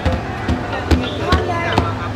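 A small child slapping two rope-tuned hand drums with open palms: about five uneven strikes, roughly two a second, each a dull thump with a slap on top.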